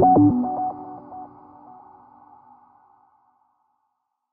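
Closing theme music: a quick run of short stepped notes that stops about a second in, leaving a ringing tail that dies away.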